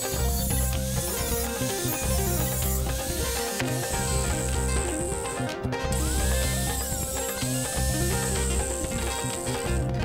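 Electric angle grinder cutting into a steel motorcycle frame, a high hiss and whine that stops briefly just before six seconds and cuts off near the end, heard over background music with a repeating bass line.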